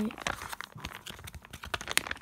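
Clear plastic card-binder pocket pages crinkling and rustling as they are handled and turned: a run of small crackles, with a sharper click near the end.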